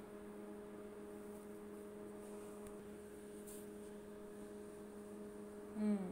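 Multi-function microwave's cooling fan running in its post-cooking cool-down cycle, a steady hum that holds one pitch throughout.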